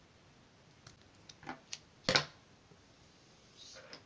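Scissors snipping the edges of a small folded paper booklet: a few light clicks, then one louder snip about halfway through, and a short brushing noise near the end.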